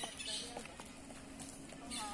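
Footsteps of sandals and flip-flops slapping on a paved street as two people walk, with faint talk between them.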